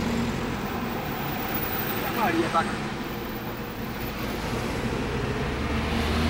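Car driving in slow city traffic, heard from inside the cabin: a steady engine and road rumble.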